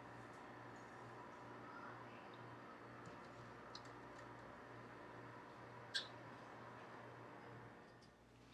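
Near silence: the faint steady hum of a countertop convection oven running hot, with one light click about six seconds in.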